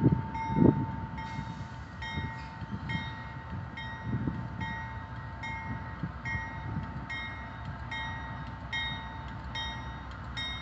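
Union Pacific freight train led by diesel-electric locomotives (an ex-Southern Pacific GE C44AC, EMD SD70M, EMD SD70ACE and GE C44/60AC) running with a steady low rumble as it pulls slowly toward the listener, while a bell rings steadily about twice a second. A few louder low thumps come in the first second.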